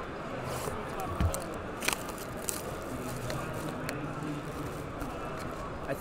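Cardboard trading card box and foil packs being handled, with a few short crinkles and scrapes, over a steady murmur of crowd chatter.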